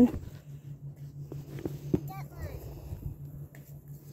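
A child's brief high-pitched voice about halfway through, just after a single sharp knock, over a steady low hum.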